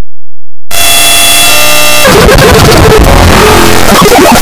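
Harsh, heavily distorted and clipped audio effect. About a second in, a buzzing tone starts, and at about two seconds it turns into loud crackling noise.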